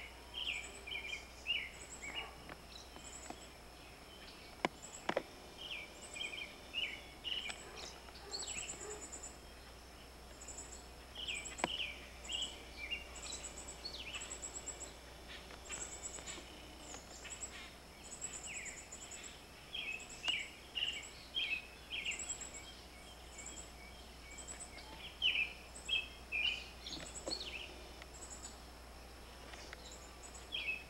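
Small birds chirping and singing in short, quickly repeated phrases, with a few faint clicks in between.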